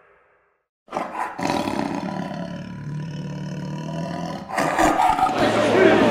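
A roaring sound effect starts suddenly about a second in, after a moment of silence, and holds steady for about three and a half seconds. It gives way near the end to livelier outdoor sound with voices.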